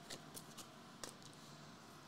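Near silence, with a few faint clicks of trading cards being handled and laid down on a mat, the clearest just after a second in.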